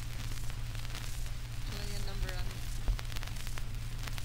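Surface noise of a 1948 Audiodisc acetate home-recording disc on playback: steady hiss and scattered crackles over a low hum. A brief voice-like sound comes about two seconds in.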